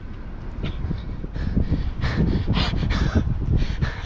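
A large catfish thrashing in a man's arms: a run of irregular slaps and thumps, loudest in the second half, as its tail strikes his face and body.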